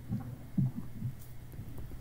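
Low steady hum with three soft, low thuds in the first second.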